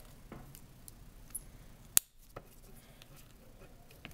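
Faint handling of a woven paracord bracelet, with a small click and then one sharp click about two seconds in.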